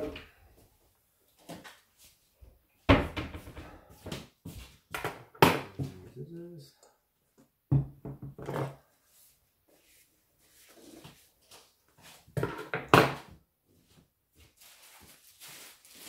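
Handling noise on a wooden table: a string of clicks, knocks and rustles as things are picked up and set down, loudest about three and five seconds in and again near thirteen seconds. Short murmured voice sounds come between them.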